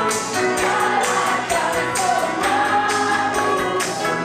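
Group singing of a gospel worship song, a woman's voice on a microphone leading the congregation over instrumental backing with a steady beat.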